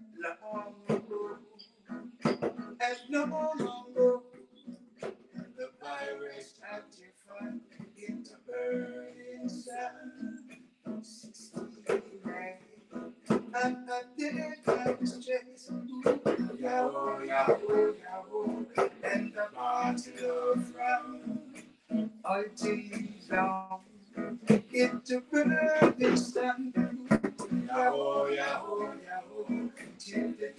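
Men singing a reggae song live, accompanied by a strummed acoustic guitar, in a small room.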